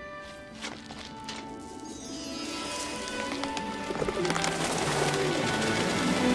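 Film score music swelling, with a flock of pigeons flapping into flight; the wingbeats and music grow steadily louder over the last few seconds.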